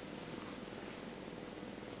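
Faint, steady background noise of a quiet room: an even hiss with a low hum under it, and no distinct events.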